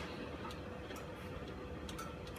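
Quiet room noise with a steady faint hum and a few light, irregular clicks: one at the start, one about half a second in, and one near the end.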